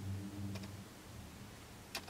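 Faint handling clicks from a lip gloss tube as its cap is taken off, with a sharper click just before the end, over a low room hum that fades out in the first half second.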